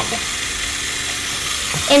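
Small LEGO Power Functions electric motor running steadily, turning the robot's wheel.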